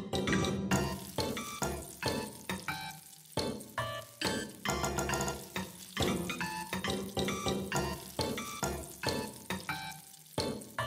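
Live electro-acoustic music built from sampled acoustic sounds: a rhythmic sequence of short, sharply struck, pitched hits, each fading quickly, following one another several times a second in an uneven pattern.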